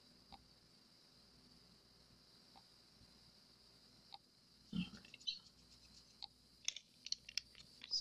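Faint handling sounds at a craft table: a few soft ticks, then from about halfway a scatter of small clicks, taps and rustles as resin tools are moved about and set down.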